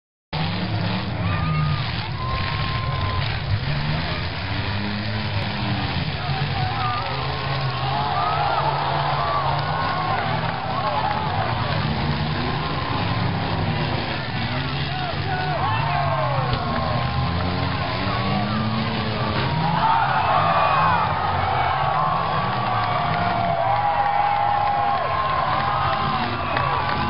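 Demolition derby cars' engines running and revving hard as they drive around the dirt arena and ram one another, over a background of crowd voices.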